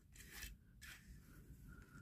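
Near silence, with faint rubbing of a small die-cast Matchbox SR.N6 hovercraft toy being pushed across a tabletop, twice in the first second.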